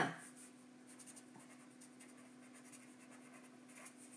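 Faint, intermittent scratching and rubbing over a steady low hum.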